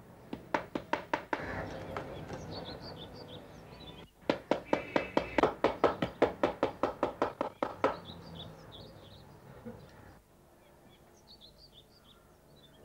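Rapid, even knocking strikes, about seven a second: a short run near the start and a longer run from about four to eight seconds in. Birds chirp in the background.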